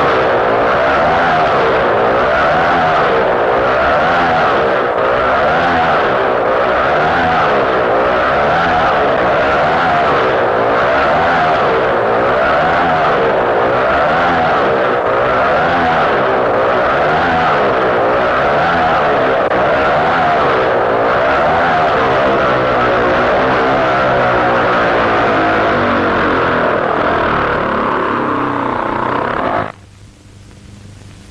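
Motorcycle engine running hard inside a steel-mesh globe of death, its pitch rising and falling about once a second as the bike circles the globe. The sound cuts off suddenly near the end.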